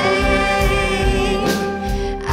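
A live band with singers performing a song: long held sung notes that waver slightly, over a steady low beat.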